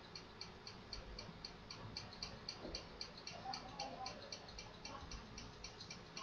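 Faint, rapid, regular ticking, about five ticks a second, over low background noise.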